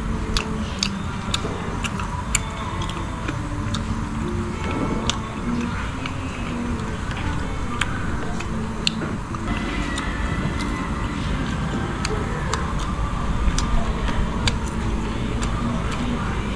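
Music playing in the background: a melody of held, stepping notes over a steady low rumble, with scattered light clicks throughout.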